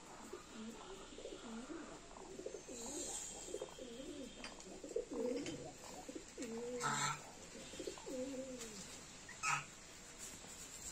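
Faint, soft cooing bird calls, a run of low notes that rise and fall one after another, with two brief sharp sounds about seven and nine and a half seconds in.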